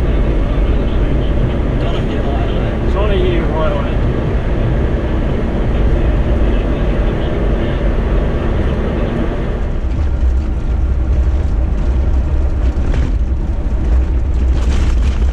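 A vehicle driving along an outback highway: steady road and wind rumble picked up by a camera mounted low on the outside of the vehicle. The rumble deepens and roughens about ten seconds in, as the sealed road gives way to gravel.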